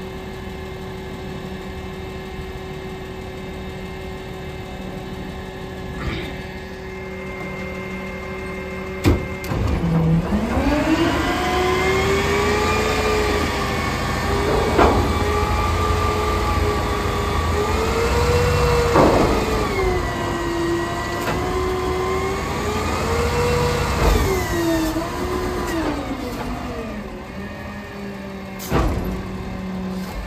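A natural-gas roll-off truck engine idles. About ten seconds in it revs up to drive the hydraulic hoist that tilts a full roll-off container up on the frame. The engine pitch rises and wavers with the load for about fifteen seconds, then drops back near the end, with a few metallic clunks along the way.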